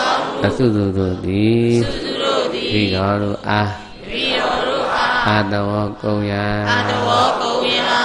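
Theravada Buddhist chanting in Pali: a man's voice intones phrases on long, level notes, with short breaks between the phrases.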